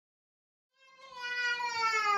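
A toddler's long drawn-out vocal cry that starts about a second in and slides slowly down in pitch.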